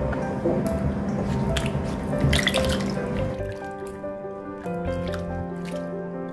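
Water splashing and dripping as Korean melons are washed by hand in a bowl, mostly in the first half, over background music.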